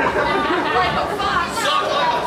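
Crowd chatter: several people talking at once, indistinctly.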